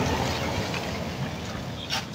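Street traffic: a car passing on the road, its engine and tyre noise fading away.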